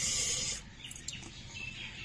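A stream of dry grains poured from a metal bowl into a pot of hot water, a steady rushing hiss that stops about half a second in. A few faint chirps follow.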